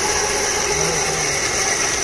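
Steady machine noise, a constant hum with a hiss above it, holding level throughout, with faint voices in the background.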